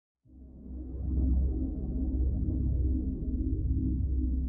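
Ambient synthesizer music fading in just after the start: a deep, steady low drone with slowly sweeping, shimmering tones above it.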